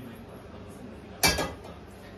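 A single sharp clatter of kitchenware about a second in, dying away with a brief ring.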